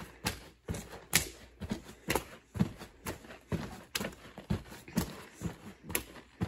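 A child doing jumping jacks on gym mats: feet landing in a steady rhythm about twice a second, with a sharper smack on every other beat, about once a second.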